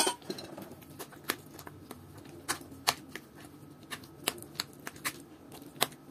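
Metal spoon stirring thick oatmeal in a bowl: irregular clicks and scrapes as the spoon knocks against the bowl's sides.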